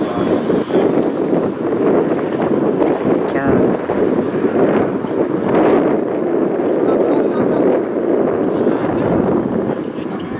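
Indistinct talking and shouting, with wind buffeting the microphone.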